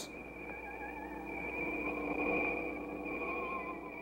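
Eerie electronic sci-fi film soundtrack: a steady high whine held over softer tones that waver slightly in pitch.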